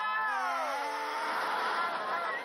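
A comedic edited-in sound effect: a pitched, whining tone with many overtones that slides slowly downward over about a second and a half, over a low held note.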